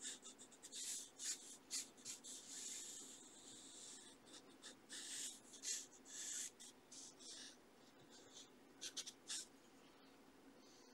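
Pencil scratching on sketchbook paper in quick, irregular strokes, with a longer run of strokes a few seconds in, stopping shortly before the end.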